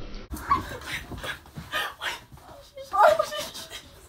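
Indistinct voices in short, broken bursts, mixed with scuffling and sharp knocks from people grappling.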